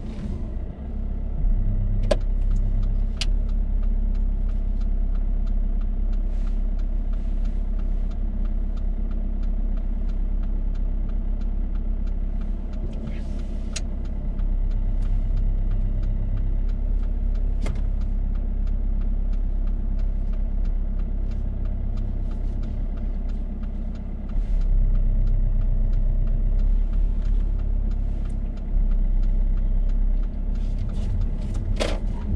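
A car's engine running at low speed, heard from inside the cabin, with a steady low rumble that swells a couple of times as the car pulls away and manoeuvres. A few sharp clicks stand out.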